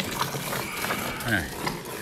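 Cow being milked by hand: quick streams of milk squirting into a metal pail of froth, heard as a run of short hissing spurts.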